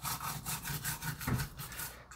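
Small stiff-bristled brush scrubbing a battery pack's circuit board wet with isopropyl alcohol, in quick repeated back-and-forth strokes.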